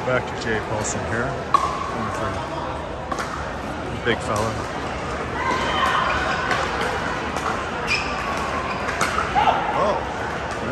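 Pickleball paddles striking a hard plastic ball in a rally, sharp pops at irregular intervals, the loudest about a second and a half in, ringing in a large echoing hall.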